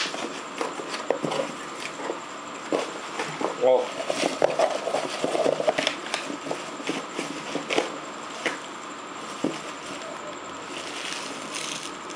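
Cardboard shipping box being pulled and torn open by hand: irregular rustling, scraping and crackling of the cardboard and packaging.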